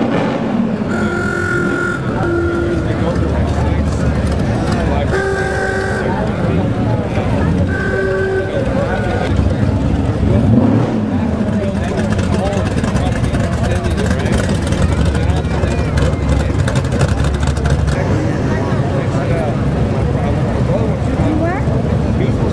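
Classic cars and hot rods driving slowly past with their engines rumbling over crowd chatter. Short car-horn toots sound about a second in, about five seconds in and about eight seconds in.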